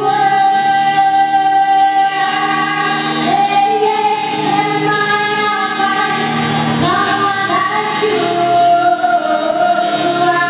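A woman singing live with acoustic guitar accompaniment, holding long sustained notes, with a sliding change of pitch about seven seconds in.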